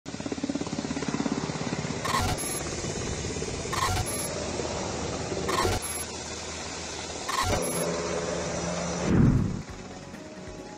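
Sound-designed news-intro effects over helicopter footage: a fast fluttering rotor chop at the start, then four heavy hits with a high ring about a second and a half apart, ending in a loud, deep, falling boom.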